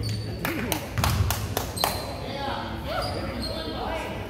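Basketball bouncing on a hardwood gym floor, about six bounces in quick, uneven succession in the first two seconds, with talking voices in the gym around it.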